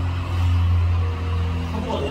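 A motor vehicle's engine running at a steady pitch, giving a low drone with a few faint overtones.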